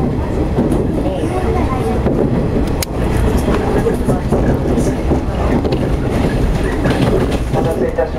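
Running noise heard inside a JR 115-series electric train carriage at speed: a steady rumble of wheels on the rails, with one sharp click about three seconds in.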